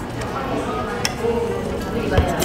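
A metal spoon clinks once against a ceramic bowl about a second in while food is scooped, over steady background music and room murmur.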